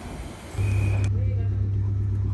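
JR 719 series electric train heard from on board: a loud, steady low hum starts about half a second in and holds, while a hiss cuts off about a second in.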